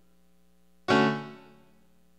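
Godin LGXT guitar playing through a guitar synthesizer on a piano-like patch: one chord struck about a second in, ringing out and fading over about a second.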